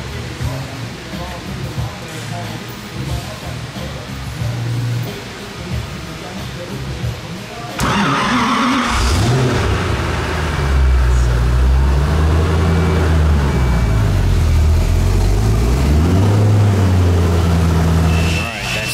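Koenigsegg CCX's twin-supercharged V8 starting: it fires suddenly about eight seconds in, then settles into a loud idle as its engine speed rises and falls a few times.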